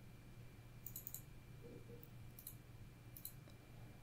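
Near silence with a few faint computer mouse clicks, about a second in, halfway through and near the end, over low room tone.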